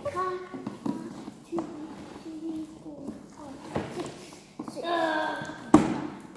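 A child's voice humming and vocalising without clear words, over taps and knocks from a cardboard toy box being handled and slid open. A single sharp knock just before the end is the loudest sound.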